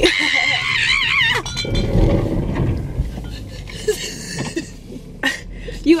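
A car driving off the road through snow, its body rumbling, with a few sharp knocks later on as it hits something. A person gives a high, wavering "whoo" cry at the start.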